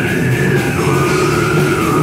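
Death metal band playing live, loud and dense: heavily distorted electric guitars and bass over a drum kit.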